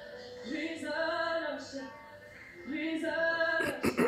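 A woman singing long held notes over music, with two sharp knocks just before the end.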